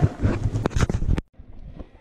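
Wind buffeting and handling noise on a handheld camera's microphone, with a few sharp knocks, cutting off suddenly a little over a second in; after that only faint street background.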